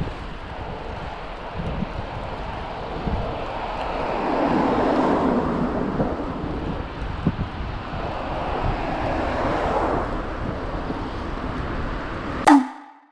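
Wind rushing over a moving microphone with low road rumble, swelling louder about four seconds in and again near ten seconds.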